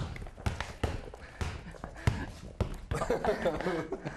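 Basketball being dribbled on a hard studio floor, a run of unevenly spaced thuds as the ball is bounced and handled.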